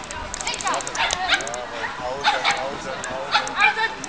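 A dog yipping and barking excitedly in short, high, rising-and-falling calls, several times, while running an agility course.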